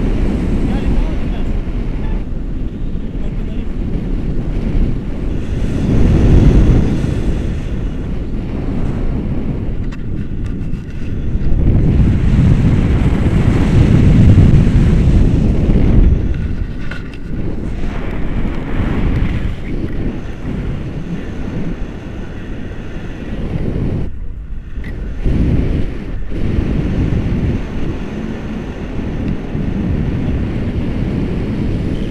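Wind rushing over the camera microphone in paragliding flight: a loud, low rumble that swells and eases in gusts, loudest about six seconds in and again from about twelve to sixteen seconds.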